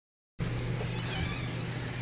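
Dead silence, then, about half a second in, a steady low hum with a faint hiss starts abruptly.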